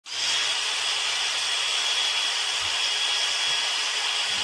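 Electric power drill running at a steady speed, a high whine over a hissing whir, starting abruptly right at the start.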